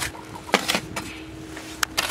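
Pointed steel trowel scooping thick cement mix in a plastic bucket: a few short scrapes and knocks, with a sharp click near the end.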